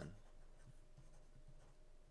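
Faint scratching and tapping of a stylus writing by hand on a tablet screen.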